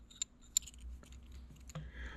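Light metal clicks as a steel pushrod is handled and its end set into the pushrod cup of an LS rocker arm: two short sharp clicks in the first half second, then faint scattered ticks.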